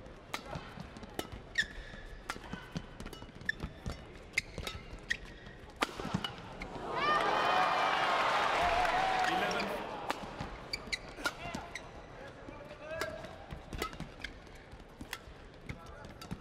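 Badminton rally: sharp cracks of racquets striking the shuttlecock and shoes squeaking on the court floor. About seven seconds in, the arena crowd cheers for about three seconds, then the hits and squeaks of another rally carry on.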